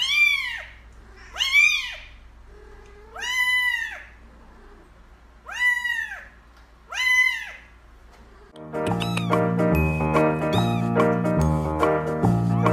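Kitten meowing five times, each call rising and then falling in pitch, a second or two apart. Music with steady keyboard notes and bass starts about two thirds of the way in.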